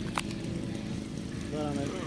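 A large RC model plane's DLE35 single-cylinder two-stroke gas engine running steadily at a distance overhead, at under half throttle, with men's voices starting up near the end.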